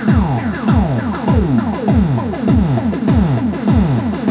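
Korg Electribe EMX-1 drum synthesizer playing a looping electronic beat: a fast run of synthesized drum hits, each dropping in pitch. The sound is being reshaped live by turning the synth filter knobs.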